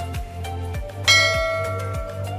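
Background music with a steady kick-drum beat and bass. About a second in, a bright bell chime is struck and rings on, slowly fading.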